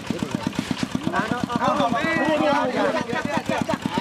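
A small engine running steadily with a fast, even putter, about ten beats a second, under several men's voices calling out.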